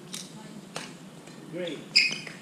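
Badminton rackets striking the shuttlecock during a rally: a sharp hit right at the start, another just under a second in, and a louder, ringing one at the very end.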